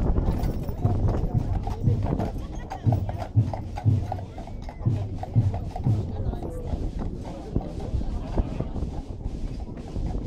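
Hooves of a pair of heavy draught horses clip-clopping on asphalt as they walk, pulling a wagon, over the chatter of a crowd.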